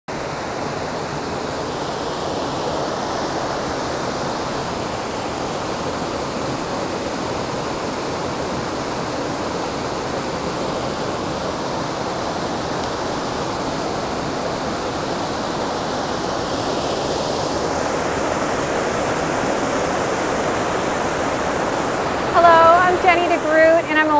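Waterfall on a forest creek: a steady, full rush of falling water that hardly changes. Near the end a woman's voice starts speaking.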